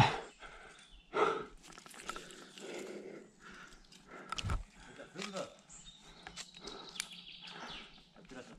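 Faint, scattered sounds of a barefoot climber moving on rock: hands and bare feet brushing and scuffing the stone, a dull thump about four and a half seconds in, and a short low grunt or breath a little after.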